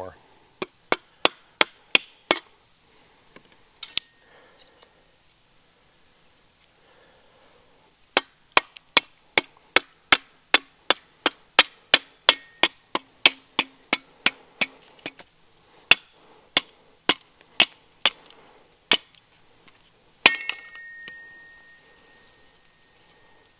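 A wooden baton striking the top of a Cold Steel Special Forces shovel's steel blade to split a stick: sharp knocks in runs, fastest at about two or three a second in the middle. A couple of strikes leave a brief ring from the blade, the loudest of them near the end.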